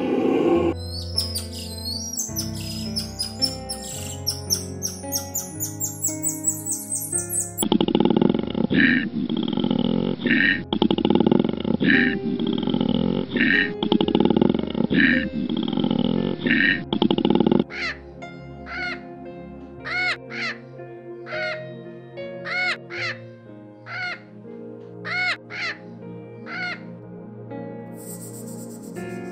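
Soft background music with bird calls laid over it. Rapid high chirping comes first, then a run of harsh, caw-like calls repeating every second or so, then a series of separate clear calls about one a second.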